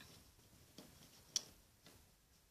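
Small handling clicks from a rubber loom band being twisted over a plastic Rainbow Loom: a few faint ticks, with one sharp click a little past halfway.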